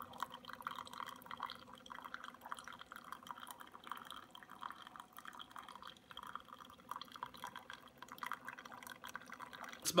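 Cuisinart single-serve pod coffee maker dispensing brewed coffee in a thin stream into a paper cup: a fine, continuous trickling patter over a low steady hum from the machine.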